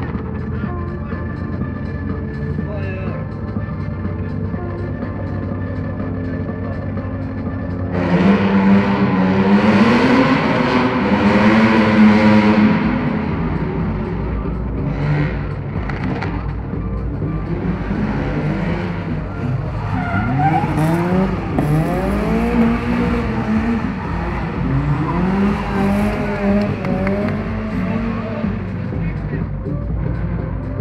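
Car engine revving hard on an autoslalom run. It starts abruptly about eight seconds in, then the pitch rises and falls again and again as the driver accelerates and lifts between the cones.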